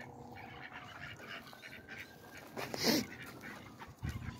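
A single short duck call about three quarters of the way through, over a faint background.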